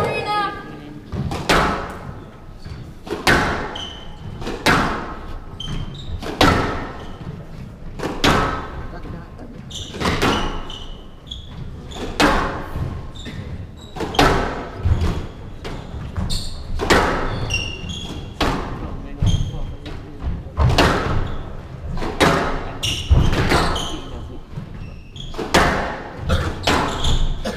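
Squash rally: the ball cracking off rackets and the court walls in sharp, echoing strikes about every second, ringing in the hall.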